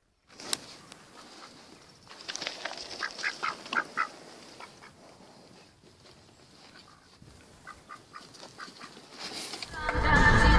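Mallard duck quacking in short calls: a quick run of about five a few seconds in, then softer ones near the end. A single sharp click comes about half a second in.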